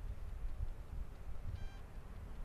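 Wind buffeting the microphone in a low rumble, with one short, steady-pitched beep about one and a half seconds in.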